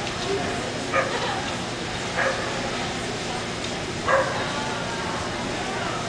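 A dog barking three short times, spaced about a second or two apart, over the steady murmur of a large hall.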